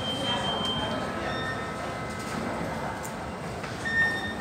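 Steady background noise of a large indoor hall at an airport security checkpoint, with a few faint, brief electronic tones, one held for about a second at the start, a few more about a second in and one short one near the end.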